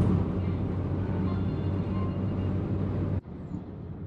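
Car cabin noise while driving: a steady low engine and tyre drone with road hiss. About three seconds in it drops suddenly to a quieter, duller road noise.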